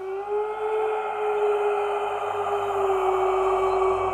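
Eerie drone music: one held, steady tone over a hissing wash, starting out of silence.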